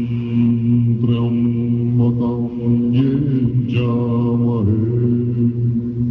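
Tibetan Buddhist prayer chanting by low male voices, held steady on one deep pitch while the syllables shift over it.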